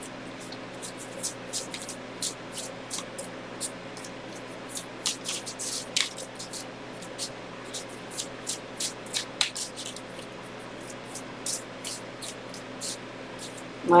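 A deck of tarot cards being shuffled by hand: a run of short, irregular card snaps and slides, a few each second.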